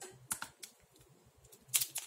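Plastic Pyraminx puzzle clicking as it is picked up and turned by hand: two single clicks about a second in, then a quick run of turning clicks near the end.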